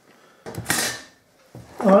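A short scraping, rustling handling sound of about half a second as things are moved on a wooden table top.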